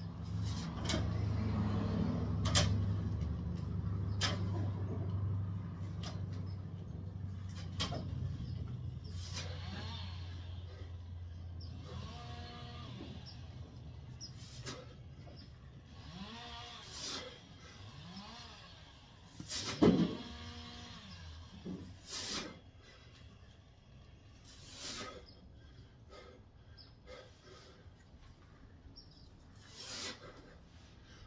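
Lifter's strained, pitched exhales and grunts rising and falling with each rep of a heavy barbell back squat set, loudest about two-thirds of the way through. Sharp clicks and knocks come throughout, and a low steady hum fades out in the first ten seconds.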